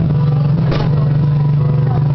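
Solo acoustic guitar, fingerstyle: low bass notes ring out and sustain, with a quick strum about three quarters of a second in.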